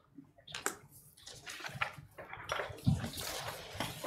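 Faint, on-and-off rustling of papers, with a few small knocks as things are handled on desks.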